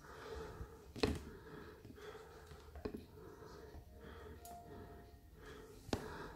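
Quiet handling sounds as a thin wire is pushed into the jaws of a cordless drill's chuck: a sharp click about a second in and a fainter one nearly two seconds later, over low room noise.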